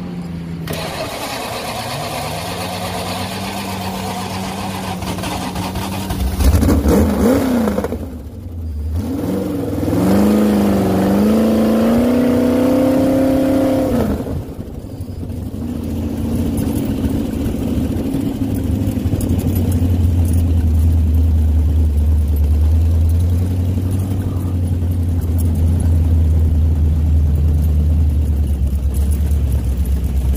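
Off-road vehicle engine idling, then revved hard about six seconds in, dropping off briefly and rising in pitch again as it pulls for a few seconds. For the second half it runs steadily with a loud low drone.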